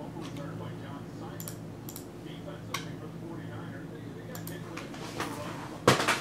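Steady low electrical hum with a few light, sharp clicks and handling noises scattered through it.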